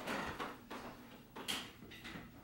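Quiet room with soft footsteps on a wooden floor and a brief rattle about one and a half seconds in.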